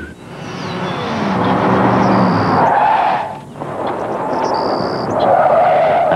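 A car driving, then tires squealing in a skid, with a brief drop in sound about three and a half seconds in.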